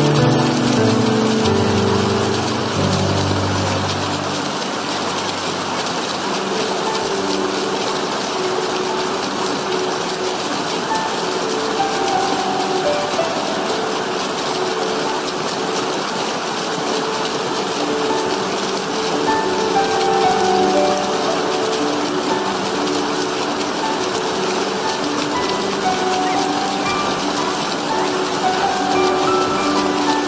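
Steady rush of water from a small stream cascading over rocks, with soft, slow keyboard music of sustained notes layered over it.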